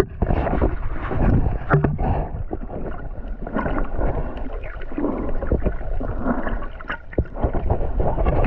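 Muffled underwater sound of water moving and gurgling around a submerged camera, with irregular knocks and clicks throughout.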